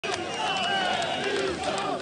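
Large crowd of protesters, many voices calling out at once in a continuous din.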